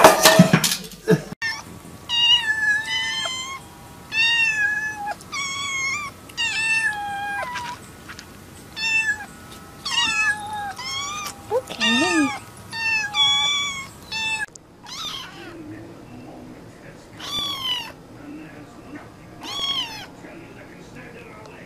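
A cat meowing over and over: a dozen or so short meows that fall in pitch, after a loud noisy burst at the very start. About two-thirds of the way through, the sound changes abruptly and a few longer, fainter meows follow.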